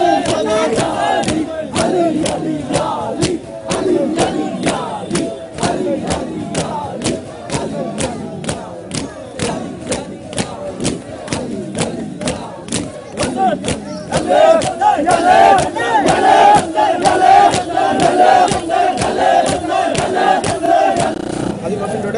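A crowd of men chanting together while beating their chests in matam, the hand slaps landing in a steady rhythm of about two a second. Past the middle the chanting swells louder and the slaps grow fainter.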